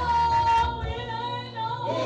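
A woman singing lead in a gospel praise song, into a microphone, holding one long note.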